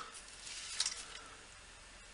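Faint scraping and a few light clicks from a small screwdriver and fingers working wires at a 3D-printer control board's screw terminals, dying away after about a second.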